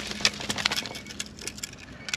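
Light, irregular clicks and clinks of fishing gear on a kayak, several a second, as a landing net is swung in.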